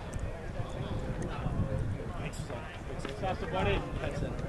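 Indistinct voices of people talking and calling out, with one voice louder near the end.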